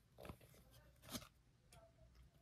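Faint handling sounds of glossy chrome trading cards being slid through by hand, with two short swishes, one about a quarter second in and a louder one about a second in.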